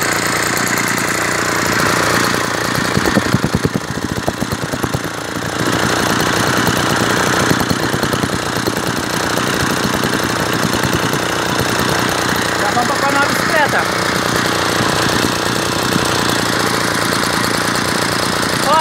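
Yanmar KT30 small two-stroke engine running steadily with a fast, even firing rattle. It turns briefly uneven about three to five seconds in.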